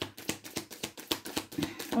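A tarot deck being shuffled by hand, the cards clicking against each other in a quick, even run.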